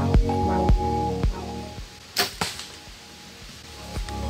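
Background music with a steady beat that cuts out about two seconds in, followed by a bow shot: a sharp crack of the string's release and, a fraction of a second later, a second crack as the fixed-blade broadhead arrow strikes the doe. The music comes back in near the end.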